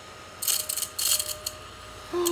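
Small battery-powered ladybug drill vacuum pushed by hand over a wooden table, with a quick flurry of rattles and clicks about half a second in, lasting about a second, as it picks up spilled resin diamond-painting drills.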